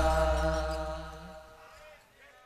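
The final held sung note of a group of men chanting a Madurese syair, with the low ring of the last drum stroke beneath it, dying away to silence about one and a half seconds in.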